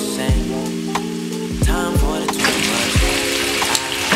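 Chicken pieces sizzling as they pan-fry in oil, the sizzle growing louder about halfway through as the pieces are turned with a spatula. Background music with a steady beat plays over it.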